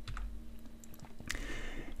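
A few computer keyboard keystrokes, faint clicks with the clearest one about a second and a half in, over a faint steady hum.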